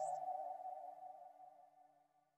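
The last held electronic tone of a drumstep track, fading out and dying away about a second and a half in.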